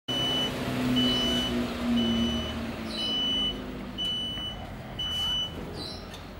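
Reversing beeper of a homemade solar-powered electric vehicle built on a mobility scooter: six even, high-pitched beeps, one a second, each about half a second long, as the vehicle backs out. A low hum runs under the first few beeps.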